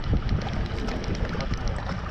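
Wind rumbling on the microphone over water lapping at the side of a small boat, a steady noise without any distinct event.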